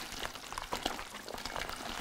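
Sheetrock Easy Sand 45 setting-type joint compound powder pouring from a paper bag into a plastic mixing bucket, a soft, steady hiss with a few faint ticks.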